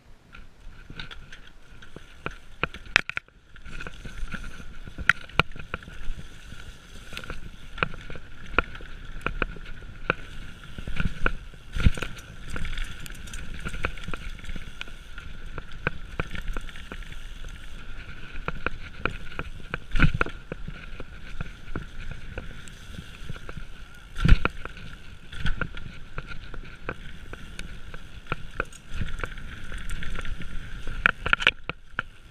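Mountain bike ridden fast down a dirt trail, heard from a camera on the bike: continuous rolling and wind noise, a steady high buzz, and frequent rattles and knocks as the bike hits bumps, the hardest about two-thirds of the way through.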